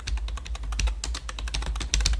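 Fast typing on a computer keyboard: a quick, unbroken run of key clicks, several a second.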